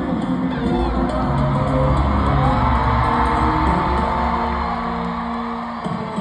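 Sierreño band music playing live over an arena sound system, heard from far up in the stands with the hall's echo. Bass and guitars carry on steadily, and a long high held note rises and falls in the middle.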